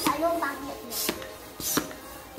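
Small hand air pump inflating a balloon, worked in short strokes: two brief hissing puffs of air, about one and 1.7 seconds in.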